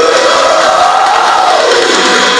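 Melodic death metal backing track with a man's voice holding one long sung note on the word "crown"; the note lifts slightly, then drops away near the end.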